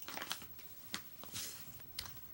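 Faint crinkling and rustling of a foil-lined coffee bag being handled, in a few short rustles with a small click about a second in.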